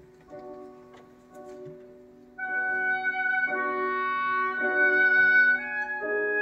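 Orchestra playing a ballet score: soft held notes that swell markedly louder about two and a half seconds in, into a sustained melody of long notes moving in steps.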